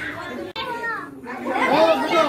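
Children and adults talking over one another at a party. The voices break off abruptly about half a second in, then resume.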